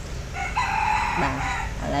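A bird's call: one drawn-out cry lasting a little over a second, with a person's voice speaking briefly beneath it near its end.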